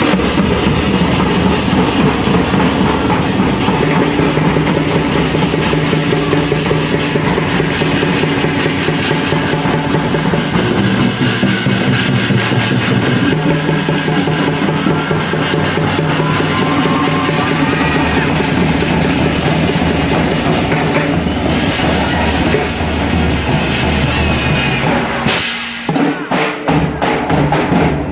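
Folk orchestra playing live: a dense ensemble with drums and percussion over sustained low notes, with a short break and a sharp strike just before the end.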